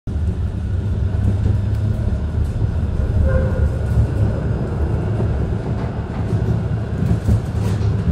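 Moderus Beta MF19AC low-floor tram heard from inside the passenger cabin while running: a steady low rumble of the tram rolling on the rails, with scattered small clicks and rattles.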